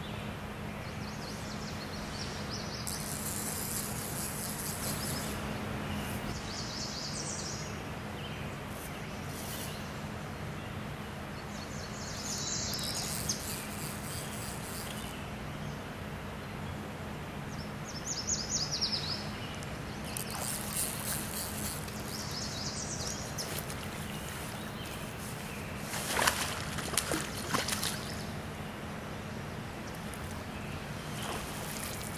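Songbirds singing in short repeated phrases several times over the steady rush of stream water. A brief burst of sharp, loud sounds comes near the end.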